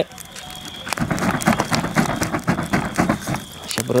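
Wood and charcoal fire crackling in an open barbecue grill, a paper charcoal bag burning in it: a dense run of irregular snaps and pops that starts about a second in.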